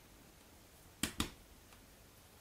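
Two short, sharp clicks about a second in, a fifth of a second apart: cardboard jigsaw puzzle pieces being set down and pressed into place on a wooden tabletop by hand.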